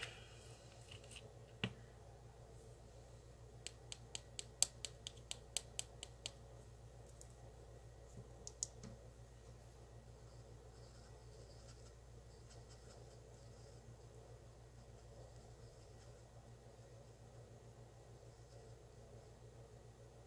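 Mostly quiet with a faint steady hum. About four seconds in there is a quick run of light clicks, roughly five a second for two to three seconds, with a few single ticks before and after, from a fine nail-art brush dabbing and tapping in glitter mix on a palette.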